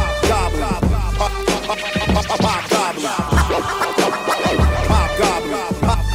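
Boom-bap hip hop beat with deep bass hits and turntable scratching, in an instrumental stretch of the track with no rapped verse.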